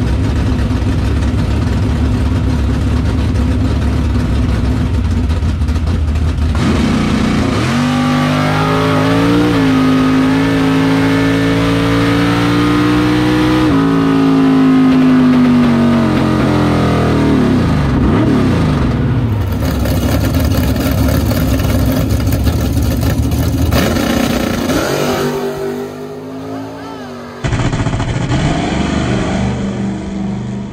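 Chevrolet Vega drag car's engine heard loud from inside the cockpit, its revs rising, holding and falling several times as the throttle is worked. Near the end the sound cuts to the car heard from outside at the starting line.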